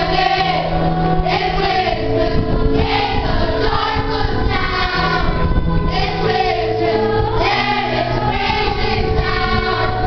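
Children's choir singing a Christmas carol together in continuous phrases, with long held notes sounding underneath.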